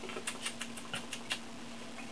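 Quick run of faint wet mouth clicks and lip smacks, several a second, from someone making mock eating and tasting noises. A faint steady hum sits under them.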